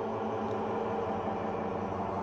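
Steady low background drone of several sustained tones held together, with no beat and no sudden events.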